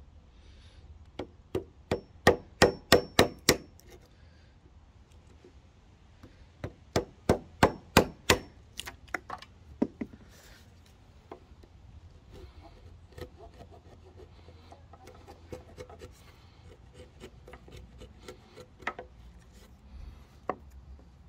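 Claw hammer driving a wood chisel into a softwood beam, knocking out the waste between saw kerfs to cut a notch: two runs of sharp blows, about eight and then about ten, a few per second. From about eleven seconds in, quieter scraping as the chisel is pushed by hand to pare the bottom of the notch.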